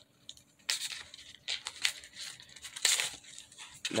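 Paper and cardboard of a Trident gum pack rustling in a few short scrapes as a stick of gum is pulled out of it.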